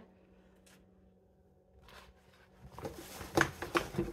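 A quiet moment, then from about two seconds in a run of irregular rustling and handling noises as hands rummage through a reusable shopping tote of empty product packaging.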